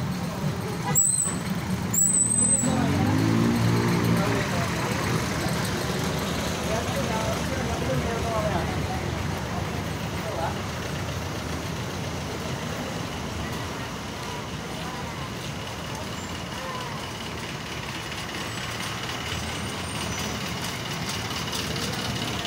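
Street traffic noise with vehicle engines running, including an engine note that rises and falls a few seconds in. Two brief high squeals come about a second apart near the start.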